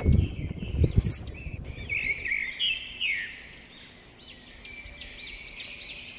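A metal barrel-bolt latch on a wooden gate slid and knocked open, with a few clicks and thumps in the first second. Then birds chirping: a quick, evenly repeated run of rising-and-falling calls.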